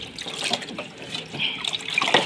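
Tap water running and splashing onto a pile of dirty dishes (steel pots, cups and a plastic tray) as they are rinsed by hand, with small irregular clinks.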